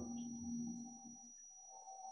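Faint ambient background music: a soft, steady drone with a low held tone and a higher one above it.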